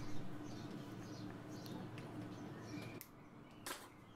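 Quiet handling of a small steel bracket being positioned on a steel plate before welding: faint scrapes and light contacts over a low steady hum, then a short sharp click near the end.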